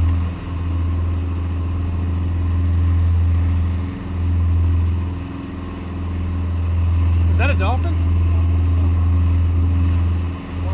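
Boat engine droning steadily while trolling, deep and even, with wake and wind noise that swell and ease every few seconds. About seven and a half seconds in, a short voice-like call bends in pitch.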